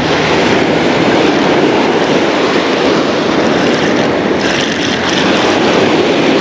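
A steady rush of wind on the microphone mixed with surf breaking along the shore.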